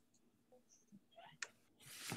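Near silence on a video call, broken by a few faint, short clicks and a sharper click about halfway through, then a breath just before the next speaker starts.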